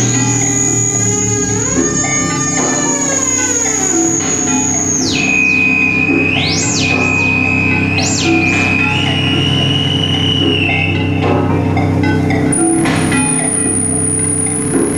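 Live electronic music played on synthesizers, among them a modular synth. A high held tone drops to a lower pitch about five seconds in, then swoops up and back down twice. A steady low bass runs underneath.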